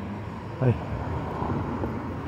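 Steady, even outdoor vehicle noise, with one short spoken word about half a second in.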